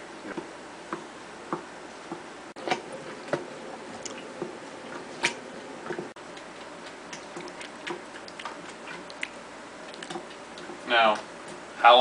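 Wooden spoon stirring wet fruit mash and sugar in a large glass jar, with irregular clicks and taps as the spoon knocks against the glass. A short voice sound comes near the end.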